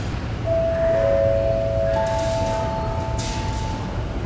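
Airport public-address chime opening a boarding announcement: three sustained notes, the first about half a second in, a lower one a moment later, and a higher one about two seconds in, ringing on together. A low steady rumble from the terminal hall lies underneath.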